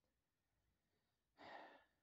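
Near silence, then a single audible breath, a sigh, about a second and a half in.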